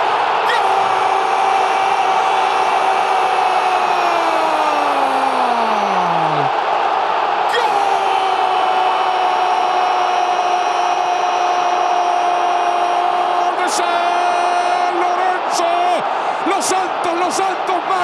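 A Spanish-language football commentator's drawn-out goal cry, "gol" held on a single note over a cheering stadium crowd. The first long note sags and falls away about six seconds in; a second held note follows from about eight to fifteen seconds, then shorter shouts.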